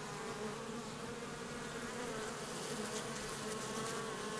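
A crowd of Western honeybees buzzing at the hive entrance as they mob a captured hornet: a steady, many-voiced hum with a clear tone that wavers slightly.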